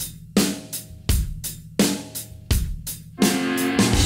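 Rock song intro: a drum kit plays a steady beat, a heavy hit with cymbal about every 0.7 seconds and lighter hi-hat strokes between, then guitar and bass come in with sustained notes a little after three seconds in.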